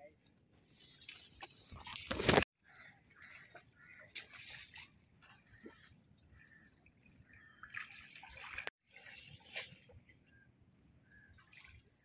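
A noisy rustle that grows and cuts off suddenly about two seconds in. Then faint sloshing and splashing of water as people wade through a pond, with distant voices.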